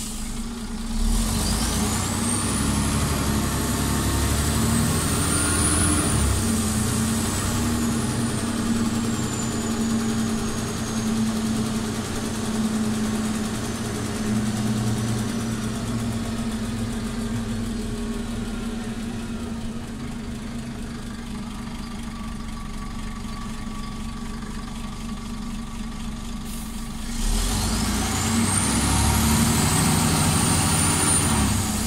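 Scania OmniCity articulated city bus pulling away about a second in, its engine rising with a high whine that climbs and then slowly falls as it picks up speed. It runs quieter for several seconds, then pulls away again near the end with the same climbing whine.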